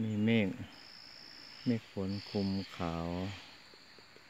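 An insect trilling in a steady high-pitched tone: one call of about a second, then a shorter one.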